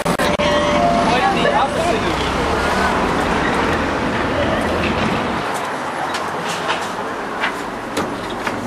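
City street traffic noise with a low rumble and indistinct voices. The rumble drops away a little past halfway.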